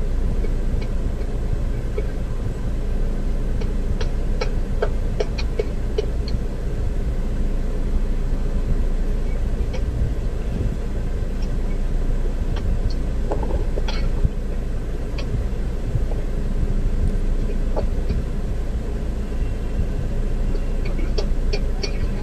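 Steady low rumble inside a stationary car's cabin, from the idling engine and the ventilation fan, with a few faint scattered ticks.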